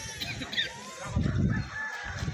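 Short, high, pitched bird calls, with a low rumble coming in about a second in.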